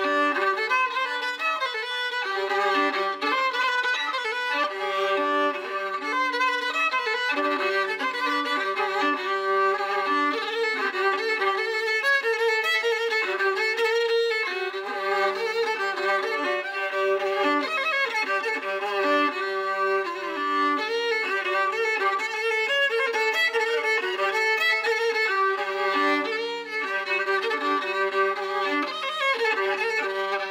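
Solo violin played with the bow: a lively folk fiddle tune of quickly changing notes, with a low drone note sounding under much of the melody.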